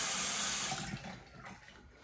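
Bathroom tap running into a sink as a safety razor is rinsed between strokes, the flow dying away about a second in.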